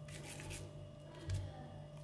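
Faint soft handling sounds of minced-meat kofta mixture being rolled and pressed between the palms, over a faint steady hum.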